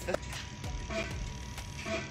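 Faint background music and room noise, with a steady thin hum running underneath. The microneedling handpiece is not yet heard firing.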